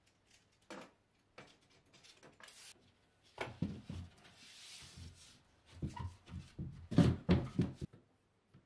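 Hands working plasterboard at a ceiling: faint clicks and rustles, then from about three seconds in a run of dull knocks and bumps on the board with a short scrape in the middle. The loudest knocks come near the end.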